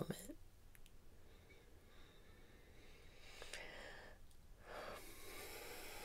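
Faint, slow breathing close to the microphone over quiet room tone. A breath is drawn in from about halfway through, there is a brief pause, and then it is let out.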